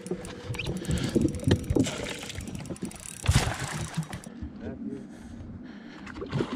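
Fishing gear being handled while a hooked carp is played: irregular knocks, clicks and rustles, with one louder thump a little over three seconds in.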